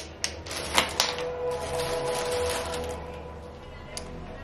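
Small acrylic powder jar handled in the hands, its screw-top lid twisted, giving a quick run of plastic clicks and ticks over the first couple of seconds. Soft background music runs underneath.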